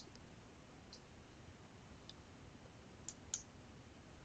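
Near silence with four faint computer mouse clicks, the last two close together about three seconds in.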